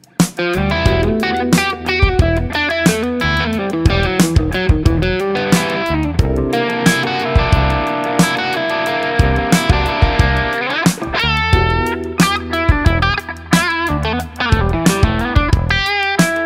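Electric guitar played through an engaged Maxon Apex808 (Tube Screamer-type) overdrive pedal: a lead line of picked single notes and chords, with a string bend up about eleven seconds in.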